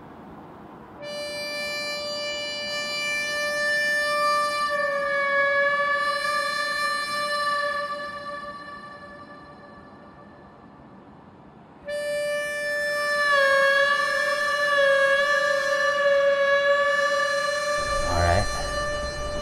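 Western standoff-style music: a harmonica holding long single notes with slight bends. The first comes in about a second in and fades away by about nine seconds; a second comes in abruptly near twelve seconds and wavers as it holds.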